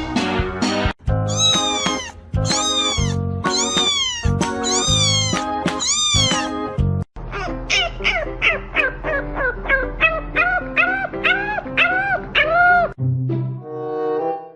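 Animal calls over background music. From about a second in, a cat meows about five times in long, high, arching cries. From about halfway, a French bulldog puppy whines in about a dozen short rising-and-falling cries, roughly two a second.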